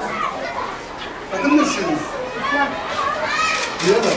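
Several children's voices talking and calling out over one another.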